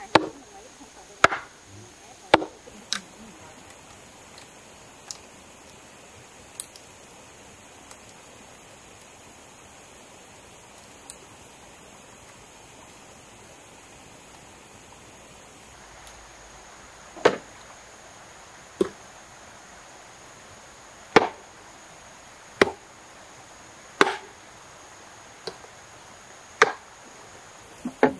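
Machete chopping into green bamboo poles: four sharp strikes in the first three seconds, then after a lull a series of about seven more strikes, one every second or two, near the end.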